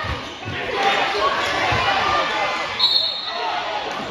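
A basketball bouncing a few times on a hardwood gym floor, under players' and spectators' shouting that echoes in the gym. A short, high referee's whistle blows just before three seconds in, calling play to a stop.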